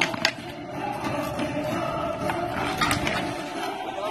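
Street hockey sticks hitting a tennis ball and the asphalt: a few sharp clacks, the loudest just after the start, over a steady background tone.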